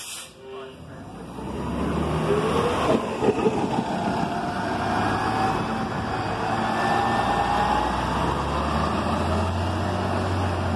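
A 2016 New Flyer XN40 bus, powered by a Cummins Westport ISL-G natural-gas engine through an Allison B400R automatic transmission, pulling away from a stop and accelerating. A brief burst of noise comes right at the start; then the bus grows loud within a couple of seconds, with a whine that climbs in pitch as it gathers speed.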